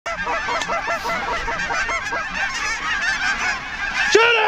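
A large flock of snow geese calling overhead: a dense chorus of short, high, overlapping honks that goes on without a break.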